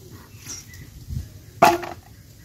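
A single short, loud animal call, like a bark, about one and a half seconds in, with a low thump just before it.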